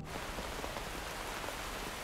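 Steady rainfall from a film's soundtrack: an even, unbroken hiss with no voices over it.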